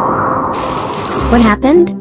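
Magic-spell sound effect: a rushing hiss like running water, with a loud wavering, warbling tone and a low rumble near the end.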